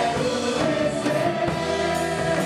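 A church worship team singing a Portuguese praise song together into microphones, with instrumental backing.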